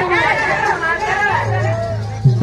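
Loud stage voices over a public-address system, several people talking back and forth. A low steady note from the accompanying music comes in about two-thirds of the way through.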